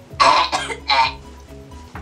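A young woman coughing and gagging into a paper gift bag, two harsh bursts in the first second, after eating a foul-tasting jelly bean. Background music runs underneath.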